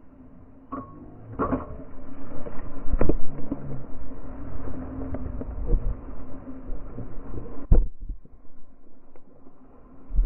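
A whale striking the water beside an inflatable boat. Heavy splashing and water crash over the boat, with sharp knocks as the camera is hit; the loudest knocks come about three seconds in and near eight seconds in.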